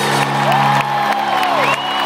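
Live band music with sustained chords, heard from among the audience in a large arena, with the crowd cheering and whooping over it.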